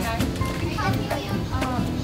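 A young woman's voice, unworded, over light bossa-lounge background music.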